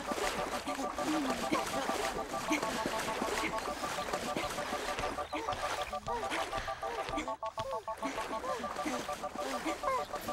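Cartoon swimming-race sound effects: splashing water with short, squeaky honking calls from the characters, repeated through the whole stretch.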